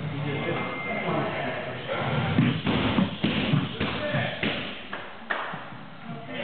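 A quick run of punches and kicks landing on padded striking mitts, about eight sharp impacts over some three seconds starting a little past the middle, with voices in the background.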